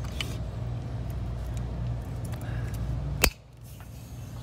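Hands handling a folding e-scooter's stem, with faint clicks over a steady low rumble. One sharp click comes about three seconds in, and the rumble drops away right after it.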